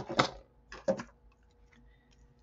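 A handful of quick plastic clicks and light clatter from a round plastic compartment box of metal jump rings being picked up and set down on the work surface, all in the first second.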